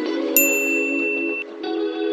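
A single bright electronic "ding" notification chime about a third of a second in, ringing clearly for about a second before fading, as a subscribe-button animation sound effect. Soft background music plays underneath.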